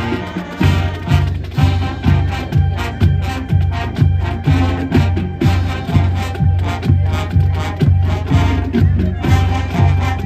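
High school marching band playing brass and percussion, with a steady beat of about two low hits a second under sustained horn chords.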